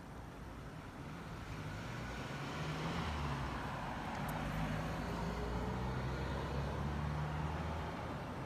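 A motor vehicle's engine running on the street, a low steady hum with traffic noise. It grows louder over the first three seconds and then holds.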